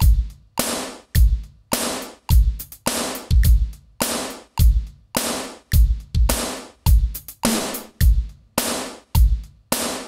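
Korg Krome workstation's drum-kit sounds played from the keyboard's lower zone and recorded live into its looping sequencer. It is a steady drum beat at about two hits a second, each hit with a deep thump and a bright tail that dies away quickly.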